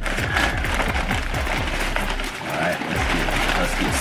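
Several paper takeout bags rustling and crinkling as hands open them and dig through the food inside.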